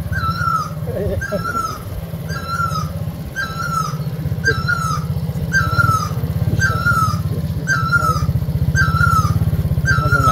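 Small motor scooter engine running low and steady while riding a rough dirt track, with a short high chirping squeak repeating about once a second over it.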